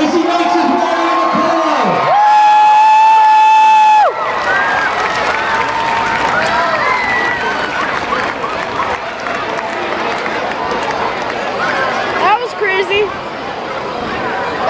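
Grandstand crowd cheering and shouting. About two seconds in, a loud, steady horn-like note holds for two seconds and cuts off, followed by more cheering with scattered whoops.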